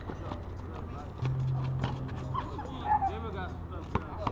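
Outdoor pickup basketball: a basketball bouncing on asphalt in repeated sharp thuds, among players' scattered shouts, with a steady low hum for about a second in the middle.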